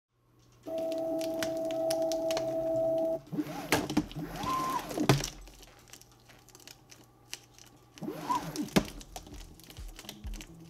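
Stepper motor driving a 3D-printed harmonic drive in a robot arm's hinge joint as it swings a hanging weight: a steady whine for about two and a half seconds, then several whines that rise and fall in pitch as the joint speeds up and slows down, with scattered clicks.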